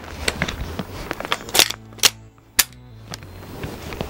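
Handling noise from an airsoft HK416D replica: a handful of sharp, irregular clacks and knocks of its plastic and metal parts as the rifle is moved and brought up to the shoulder, the loudest near the middle.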